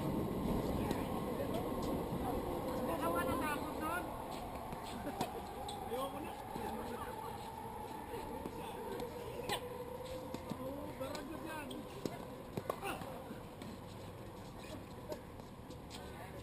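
Laughter and scattered chatter from players on outdoor tennis courts, with a few sharp knocks of tennis balls being struck; the clearest knock comes about nine and a half seconds in.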